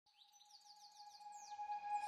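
Birds chirping in a quick run of short falling calls over one steady held tone, fading in from faint.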